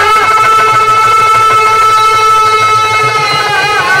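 A male birha singer holds one long, high sung note, bending it slightly near the end, over steady instrumental accompaniment.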